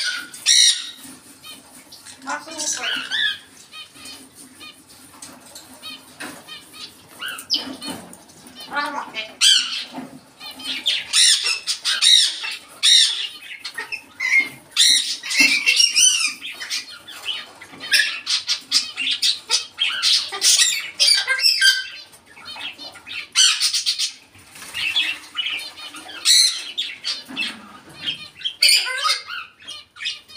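African grey parrot squawking and whistling in a long string of quick, shifting calls, busiest in the middle and second half, with a few quieter gaps.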